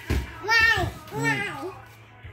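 A soft thump as a toddler tumbles off a yoga wheel onto a foam play mat, followed by two high, wavering wordless vocal sounds from the child, the first the louder.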